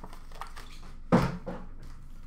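Foil trading card packs being handled on a glass counter top: a few light knocks and one louder thump about a second in.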